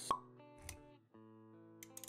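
Animated intro sound effects over music: a short, bright pop right at the start, the loudest sound, then a soft low thud just over half a second later, with held synth-like notes underneath.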